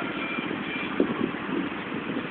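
Go-kart engines running steadily, with one sharp knock about a second in.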